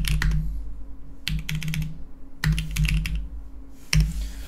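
Typing on a computer keyboard in four short bursts of rapid keystrokes, about a second apart.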